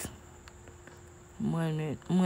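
A faint steady high-pitched whine over quiet room noise, after a click at the start. A person's voice starts about a second and a half in.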